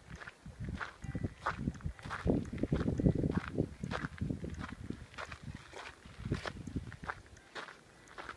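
Footsteps walking on a gravel path, a steady pace of about one and a half steps a second, loudest around the middle.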